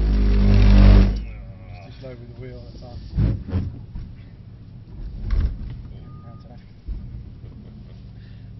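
Mercedes-AMG C63 S's 4.0-litre twin-turbo V8, heard from inside the cabin, running hard and getting louder for about the first second, then dropping away sharply as the throttle is lifted. It then runs quietly at low revs.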